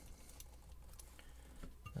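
Faint handling of a small metal lock cylinder, with a few light ticks, as the plug is worked out of its housing.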